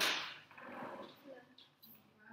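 A sudden swish as a book is swept close past the microphone, loudest at the start and fading over about half a second, followed by softer rustling from handling.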